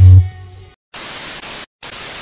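Bass-heavy electronic dance music dies away in the first moments. After a short silence, TV static hiss comes in two bursts with a brief gap between them.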